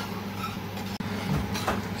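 Steady rushing kitchen noise with a low hum from a steaming pot of seafood soup on the stove as a ladle stirs it; the sound drops out for an instant about halfway through.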